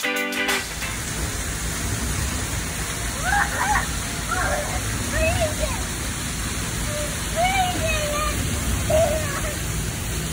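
Splash-pad water running and spraying, a steady rush, with a small child's short high calls every second or two.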